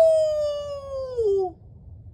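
A man howling in imitation of a coyote: one long note that slides slowly downward in pitch and stops about a second and a half in.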